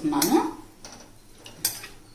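A metal spoon scraping raw chicken pieces out of a glass bowl into a nonstick pan, with one sharp clink about one and a half seconds in.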